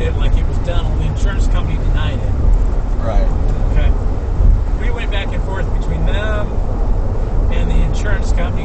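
Steady low rumble of a Jeep's engine and tyres heard inside the cabin while driving at road speed.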